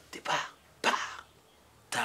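A person coughing: a few short, separate coughs with quiet gaps between them.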